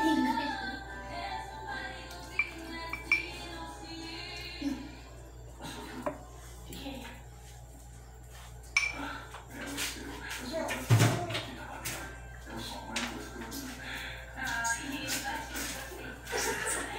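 A metal spoon clinking against a cup and a metal baking pan several times, with one louder knock near the middle, over background music with a voice.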